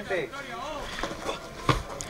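Faint shouts of players calling out on the pitch, then a single sharp thud of the football being struck near the end.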